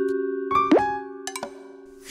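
Cartoon soundtrack: a held musical chord slowly fading out, with a short rising cartoon sound effect about half a second in and a couple of faint clicks a little later.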